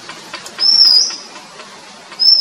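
Oriental magpie-robin singing: a few faint ticks, then one loud, clear, high whistled note about half a second long, starting a little after half a second in and lifting slightly at its end.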